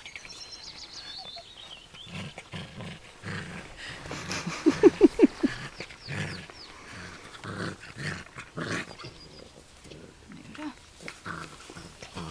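Clumber Spaniel puppies barking: a quick run of about five short, sharp barks about halfway through, with quieter dog sounds around them. A bird's descending trill is heard in the first second.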